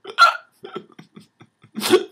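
A man's stifled laughter coming out in short, separate bursts through clenched teeth, with a sharp burst about a quarter second in, a few small ones in the middle, and a louder one near the end.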